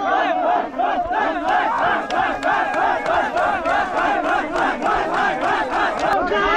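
A group of men chanting together in a quick, even rhythm, their voices rising and falling on every beat, as a celebration.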